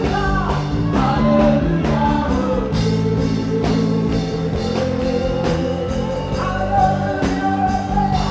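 Live gospel praise and worship music: a woman sings lead into a microphone over a full band, with backing singers, electric guitar, keyboard, bass and a steady drum beat.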